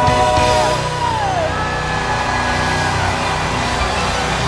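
Live gospel band music near a song's end: a held chord stops less than a second in, followed by falling pitch glides and a high held note over a steady low band sound.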